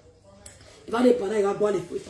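A woman speaking: a brief pause, then her voice resumes about a second in.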